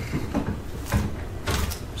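Microphone handling noise: several irregular knocks and dull thumps as the microphone is taken off and handled.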